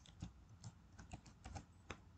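Faint typing on a computer keyboard: about eight separate, irregular keystrokes.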